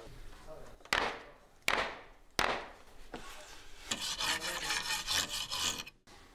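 A hand-held turning tool cutting into a rough wooden bowl blank on a traditional wood lathe: three sharp scraping strokes about 0.7 s apart, then a steadier rasping scrape of the tool on the wood in the second half.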